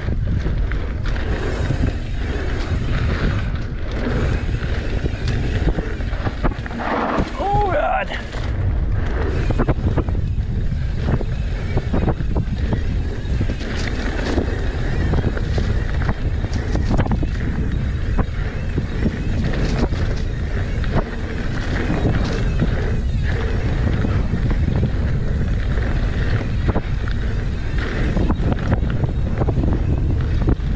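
Wind buffeting the microphone while a mountain bike runs fast downhill on a dirt singletrack, with the rumble of knobby tyres and the rattle of the bike over rough ground. A short wavering pitched sound comes about seven seconds in.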